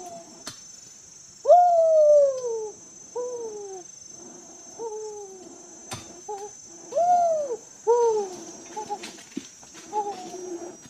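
Bird calling over and over in short notes that rise briefly and then fall, about one a second, the loudest about one and a half seconds in. A steady high drone runs beneath, and there are two sharp clicks, one near the start and one about six seconds in.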